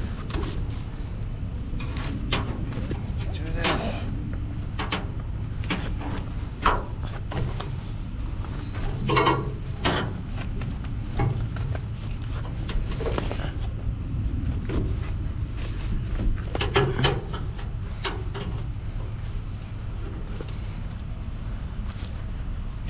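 A truck engine idling steadily, with scattered knocks and clatter from things being handled, about one every second or two.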